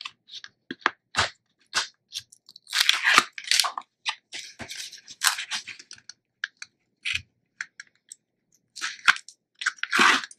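Backing liners being picked at and peeled off strips of Sookwang double-sided tape: irregular crackling and crinkling with short clicks, busiest a few seconds in.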